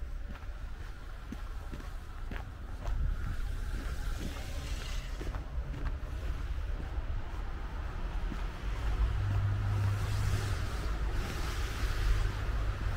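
Car traffic passing on the street, a tyre hiss swelling about four seconds in and again near the end over a steady low rumble, with footsteps on packed snow clearest in the first few seconds.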